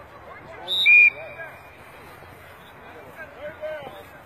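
A short, loud blast of a referee's whistle about a second in, marking the end of a play, over scattered voices of players and onlookers.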